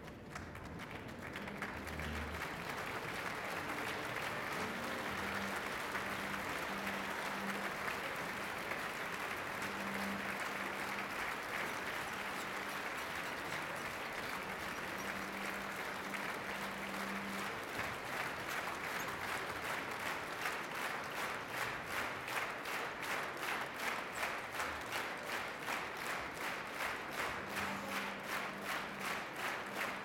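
A large theatre audience applauding a curtain call, swelling in over the first two seconds. About two-thirds of the way through, the clapping falls into unison rhythmic clapping, roughly two to three claps a second.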